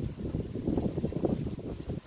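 Wind buffeting the phone's microphone: an uneven low rumble that rises and falls, dropping away near the end.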